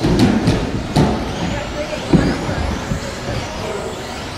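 Electric stock-class RC buggies running on an indoor carpet track, with a faint high motor whine and several sharp knocks in the first two seconds, over a background din of voices in a large room.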